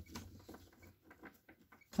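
A tarot deck being shuffled by hand: a run of soft, irregular card clicks and rustles that grows fainter and sparser toward the end.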